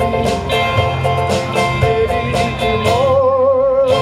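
Live music through a PA: a man singing to electric guitar over a steady beat, holding one long note with vibrato near the end.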